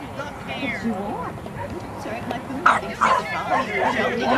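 A dog whining and yipping, then two sharp barks close together near the end, over background chatter.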